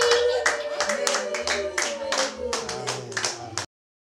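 A small group clapping hands in a steady rhythm, about four claps a second, with a held voice fading underneath. The sound cuts off suddenly near the end.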